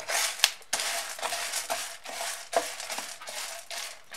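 Unshelled sunflower seeds rattling and scraping across a baking tray as a wooden spatula stirs them while they roast, with a dense run of small clicks throughout.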